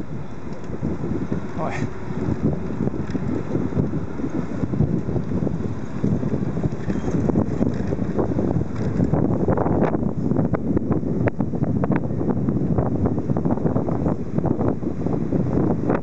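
Wind buffeting the camera's microphone: a dense low rush that rises and falls in gusts.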